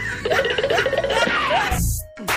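Canned laughter sound effect over an intro jingle, with a low thud near the end.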